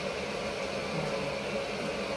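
Steady background hum and hiss.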